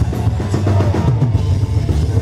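Folk-metal band playing loud live music, with the drum kit to the fore: bass drum and cymbals.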